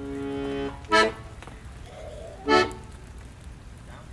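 Piano accordion holding a chord that stops just under a second in, then playing two short, clipped chords about a second and a half apart.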